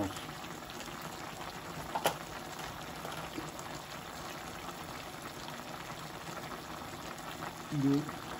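A pot of chicken curry simmering on a gas stove, with a steady hiss of bubbling liquid. A single sharp click sounds about two seconds in.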